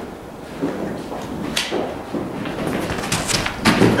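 A sharp knock about one and a half seconds in, then a run of thuds as a bowler runs in on the net matting. Near the end comes the loudest sound, the crack of a cricket bat driving the ball.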